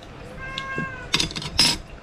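A cat meows once off-camera, a single drawn-out call that drops a little at its end, then a metal spoon knocks twice against a stainless steel bowl, the second knock the loudest.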